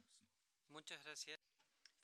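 A short spoken phrase in a conference hall, about half a second long, a little before the middle, preceded by a couple of soft clicks at the start.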